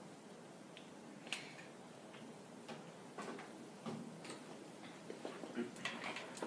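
Scattered light clicks and taps of students pressing calculator keys, sparse and irregular.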